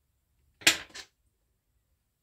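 A small screwdriver set down on a wooden workbench: two quick clacks a third of a second apart, the first louder.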